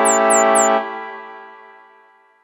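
Cartoon score music: a sustained keyboard chord held for under a second, then dying away, with a few quick high descending chirps over its start.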